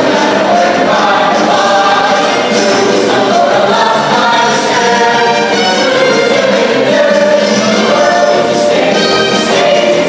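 Mixed show choir of male and female voices singing together in parts, loud and steady.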